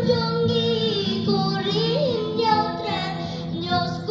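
A high-pitched voice singing a Khasi patriotic song over a steady instrumental accompaniment. The melody moves in long held notes that waver and bend in pitch.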